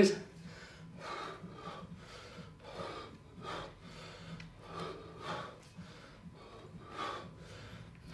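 A man breathing hard through a set of two-handed kettlebell swings, with a short, forceful exhale roughly every second in time with the swings.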